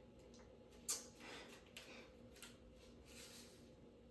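Faint crinkling and small clicks of a small plastic candy powder packet being torn open and handled by hand, with one sharper click a little under a second in.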